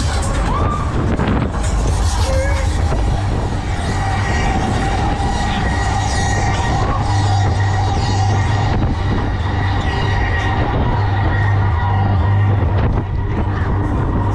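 Break Dance fairground ride running, heard from a spinning car: a steady low hum under a dense rushing noise, with loud fairground music mixed in.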